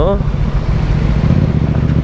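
Yamaha MT-07's parallel-twin engine running steadily at a low cruising speed, with tyres hissing on the wet road.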